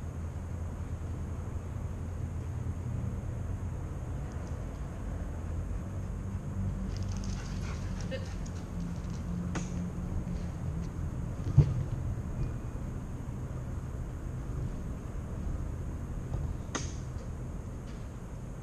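Steady low room hum, with a few faint clicks and one sharp knock about two-thirds of the way through.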